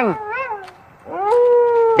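A voice calling out in long, drawn-out, howl-like tones. Just after the start there is a short call that rises and falls; then, about a second in, a long call rises and holds steady on one pitch.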